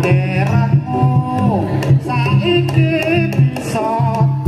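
Live Javanese jaranan accompaniment: hand drums and gong-like pitched percussion keeping a steady rhythm, with sharp metallic strokes and a wailing melody that holds notes and slides up and down between them.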